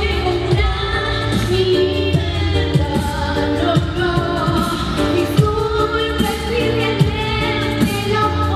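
A female voice singing live into a microphone over loud amplified music with a bass line and a steady beat.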